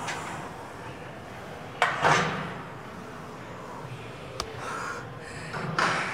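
A woman's two loud, breathy exhales of effort, about four seconds apart, as she does squats, with a couple of sharp clicks over steady room noise.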